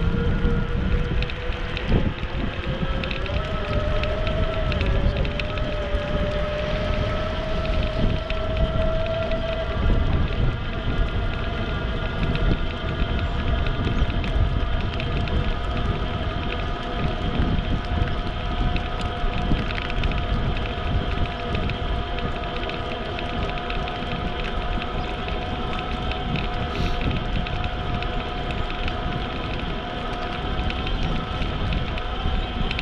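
Riding a bicycle along a paved path, heard from a bike-mounted camera: wind rumbling on the microphone with tyre and road noise. Over it runs a steady whine that rises in pitch over the first ten seconds and then holds level.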